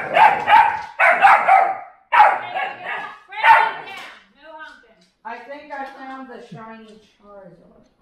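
Two pit bulls play-fighting, giving loud, rough growls and barks in bursts about once a second, then softer pitched vocal sounds in the second half.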